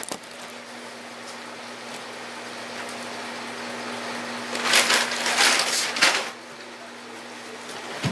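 Potato chip bag crinkling in a loud cluster of crackles from a little past halfway for about a second and a half, over a steady low hum.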